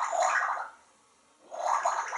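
African grey parrot vocally mimicking gurgling water, in two bursts of about a second each, the second beginning about halfway through.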